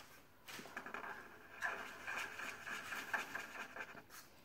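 Felt-tip marker drawing on paper: short, irregular scratchy strokes.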